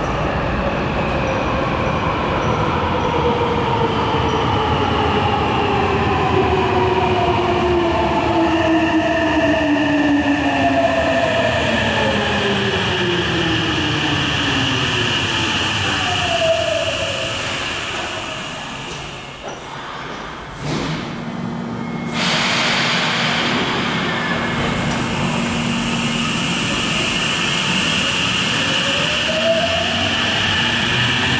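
Hankyu 9000 series train's Toshiba IGBT-VVVF inverter and induction traction motors whining in several tones that fall steadily as the train brakes to a stop in the station, fading out about twenty seconds in with a knock. A sudden hiss and a steady low hum follow, and near the end the inverter tones start to rise again as a train begins to accelerate.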